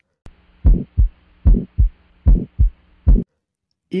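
Recorded heart sounds as heard through a stethoscope: about four heartbeats, each a lub-dub pair, a little under a second apart, with a faint hiss between the beats. They are played as an example of the systolic ejection murmur of aortic stenosis.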